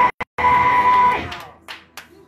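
A woman's amplified voice through a handheld microphone, held on one long high note. The sound cuts out briefly just at the start, then the note holds for under a second and dies away with room echo about a second and a half in.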